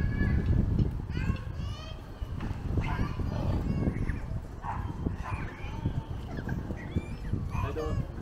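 A small child's high-pitched voice calling out several times in short bursts, over a low rumble that is loudest at the start.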